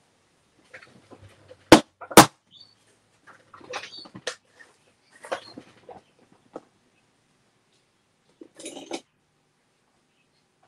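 Plastic lid of a tub of paste being twisted and popped open: two sharp, loud clicks about half a second apart near two seconds in, then scattered scraping and rustling of the tub being handled.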